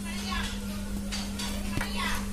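A steady low hum with a few faint soft rustles and one light click near the end.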